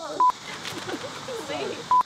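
Two short, loud electronic beeps of one steady pitch, about 1.7 seconds apart, with low talk between them.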